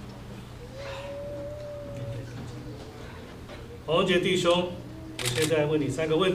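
A man speaking quietly in short phrases from about four seconds in, after a few quiet seconds of low room hum.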